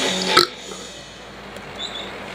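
A man burps once, briefly, in the first half second.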